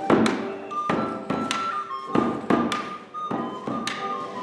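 Live early-style music: a high wooden pipe holds a melody over a drum struck with a stick in a loose rhythm of a few beats a second, with a small plucked guitar-like instrument underneath.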